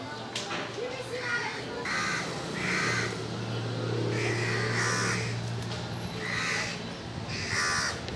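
Crows cawing repeatedly from the trees, a string of short harsh caws about a second apart, over a steady low hum.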